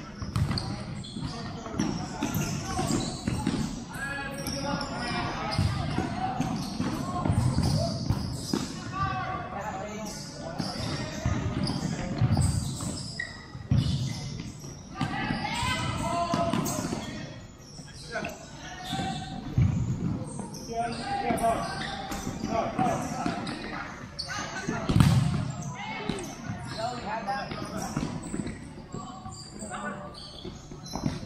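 Futsal ball being kicked and bouncing on a tiled sport-court floor, repeated dull thuds and knocks with reverberation from a large hall. One louder thud comes late on.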